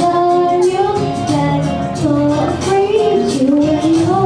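A young girl singing into a handheld microphone over instrumental accompaniment, her melody moving in short phrases with held notes.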